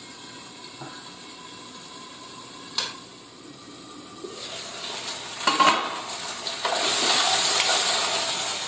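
Chicken pieces frying in oil in a nonstick pan, at first a faint steady sizzle under the lid with one sharp click near three seconds in. Once the pan is uncovered the sizzle grows louder, with a knock of utensil on pan about five and a half seconds in, and turns into a loud sizzle as the chicken is stirred with a wooden spoon near the end.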